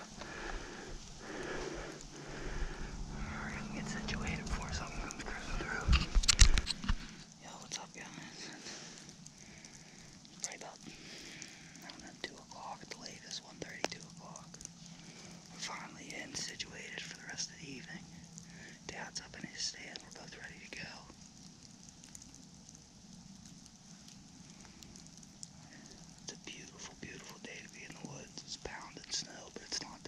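Rubbing and handling noise close to the camera microphone for the first several seconds, with a sharp knock about six seconds in. After that it is quiet, with scattered small clicks and soft whispering.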